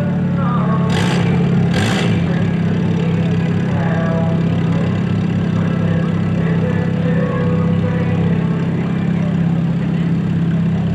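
Several front-wheel-drive mod race car engines idling together at the start line, a steady low drone. Two short, sharp bursts come about one and two seconds in.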